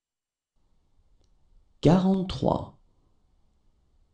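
A single voice saying one French number word, 'quarante-trois', about two seconds in. The rest is near silence.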